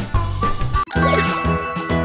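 Upbeat background music with a steady beat; a little under a second in it drops out for an instant, and then a bright tinkling chime effect with a quick falling sparkle sounds over the music.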